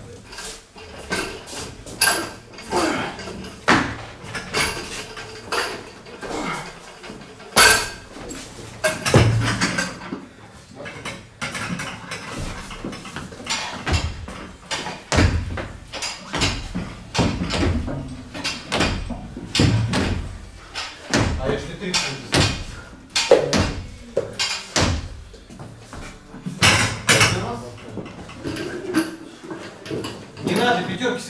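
Gym sounds: iron weight plates clanking and barbells knocking as bars are loaded and handled, with several heavier thuds of a loaded bar. Voices talk indistinctly in the background.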